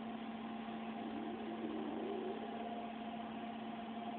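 Steady machine hum in the room, a constant low tone with a fainter higher one over a soft even hiss, from a fan or small motor running.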